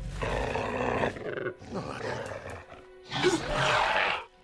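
A film velociraptor vocalising in three bouts, over background music. It growls at the start, makes a shorter sound in the middle, and gives a louder call near the end.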